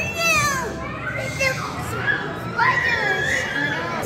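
Children's voices talking and calling out, high-pitched with rising and falling exclamations.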